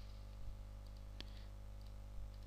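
Two soft computer mouse clicks, about half a second and just over a second in, over a faint steady electrical hum.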